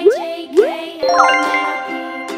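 Two quick rising swoop sound effects, then a bright ringing chime about a second in, over cheerful background music.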